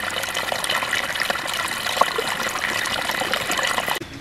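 A small stream running over rocks: a steady rush and splash of flowing water that starts suddenly.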